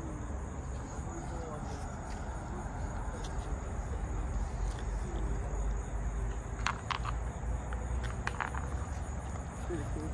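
Outdoor ambience: a steady, high-pitched insect drone over a low rumble, with a few sharp clicks about seven and eight seconds in.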